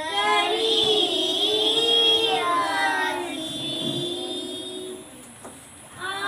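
Children singing a song, with a young girl's voice on a microphone. A loud sung phrase ends about three seconds in, the singing goes on more quietly, and it almost stops near the end.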